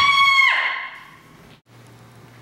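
A loud, high-pitched wail that rises quickly in pitch, holds one note for about half a second, then fades out with a ringing tail.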